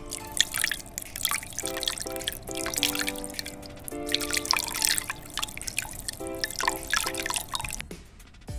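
Water dripping and splashing onto a metal flashlight in a glass bowl, many quick drips and splashes, over background music of held chords.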